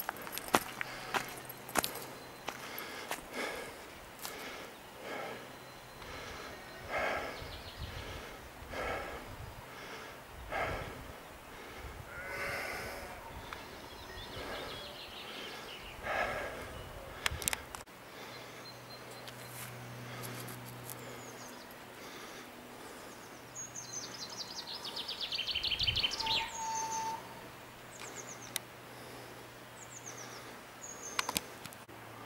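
Footsteps of someone walking outdoors, about one step a second, with birds singing around. Near the end a bird sings a loud trill whose notes fall steadily in pitch.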